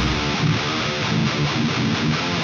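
Electric guitar alone in a death metal song, playing a riff of quick picked notes, thin and lacking top end, with no drums or bass under it.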